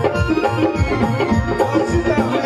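Live stage music: a melody of held notes over a steady drum rhythm.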